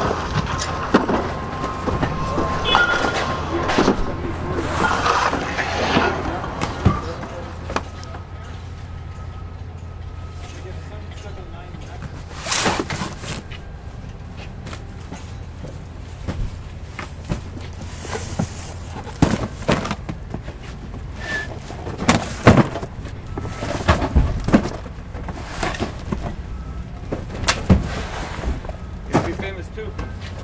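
Cardboard cases of wine being handled and unloaded from a delivery van: scattered sharp knocks and thuds of boxes set down, over a steady low hum.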